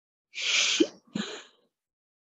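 A person's sharp, hissy burst of breath like a sneeze about a third of a second in, followed by a shorter second burst, heard through a video-call microphone.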